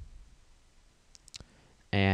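A few faint, sharp clicks in a quiet room, then a man starts speaking just before the end.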